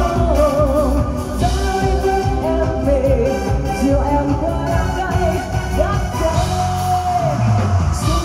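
A woman singing a pop song live into a microphone, backed by a band of drum kit, electric guitar and keyboard. Her voice wavers in vibrato, with a long held note in the second half.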